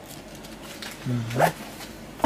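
A man's short voiced "uh-huh" of assent (Turkish "hı-hı") about a second in, over faint rustling as a leather boot and its paper stuffing are handled.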